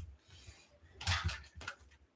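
Handling noise as a ukulele is picked up and brought in: a few soft knocks and clatters, one near the start and a pair about a second in, with a small click near the end.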